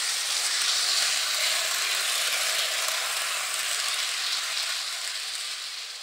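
Hornby Blue Rapier Class 395 model train running on its track: a steady running noise from the motor and wheels that fades near the end.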